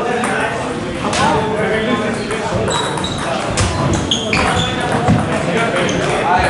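Table tennis ball clicking off paddles and the table during a doubles rally, with several sharp ticks. Indistinct chatter from spectators carries on underneath, echoing in a large hall.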